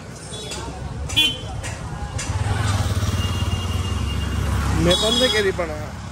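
A motor vehicle passing close, its engine rumbling steadily for about two and a half seconds from about two seconds in, with short horn toots about a second in and near the end, over busy street noise.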